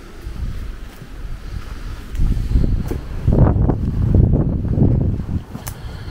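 Wind buffeting the camera microphone, a low uneven rumble that gusts louder about halfway through.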